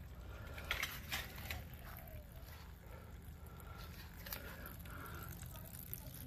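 Faint trickle of a thin stream of water running from a hole in the ute's sill onto grass, draining water that has leaked into the front floor, with a few faint clicks.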